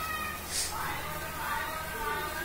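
A baby's high-pitched vocalising.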